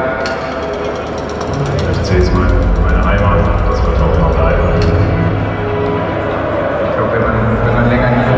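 A song over the stadium PA with a large crowd singing along; a heavy bass beat comes in about two seconds in and keeps going.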